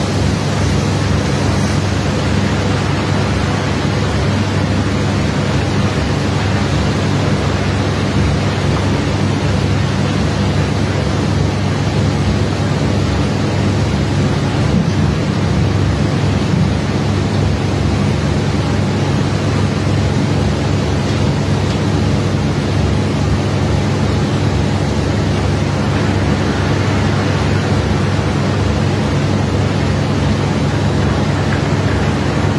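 Steady, loud drone of machinery running on the barge during unloading: a low engine hum under an even rushing noise, with no change throughout.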